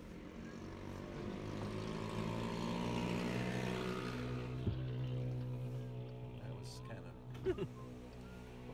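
A loud engine with a deep, steady drone that swells over a few seconds and then fades away. It sounds like an engine with its mufflers cut off.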